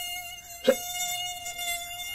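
Mosquito buzzing sound effect: a steady, unwavering high whine. It is cut briefly by a shouted word a little over half a second in.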